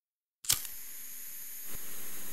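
A cigarette lighter is struck with a sharp click about half a second in, followed by a steady hiss of the flame. A second click comes near the end.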